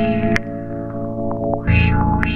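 Sampler-made instrumental beat: a looped, effected sample of held tones over a low bass, cut by sharp clicks, played on a Roland SP-404SX sampler. A heavy low hit comes back near the end as the loop repeats.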